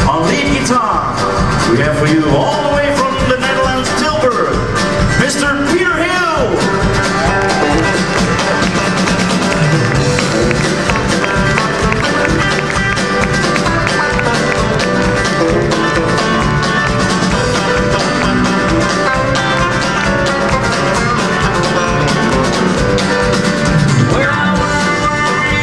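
Country band playing live, with an electric guitar taking the lead over the band.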